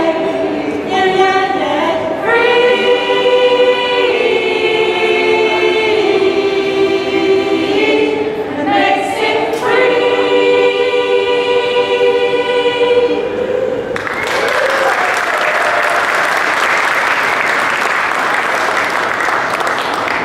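A mixed choir singing long held notes, closing on a sustained chord about two-thirds of the way through, followed by steady applause.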